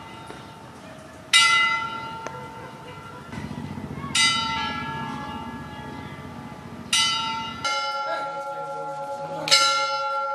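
A church bell rung by pulling a rope: four strokes about three seconds apart, each ringing on and fading. About two-thirds of the way through, the sound changes abruptly to a steadier ringing of the bell.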